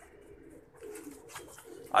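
Domestic pigeons cooing faintly in a wire-fronted loft, with a few light clicks and rustles.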